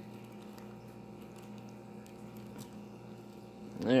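A small plastic zip-top bag handled and pulled open, giving a few faint crinkles and clicks over a steady low hum.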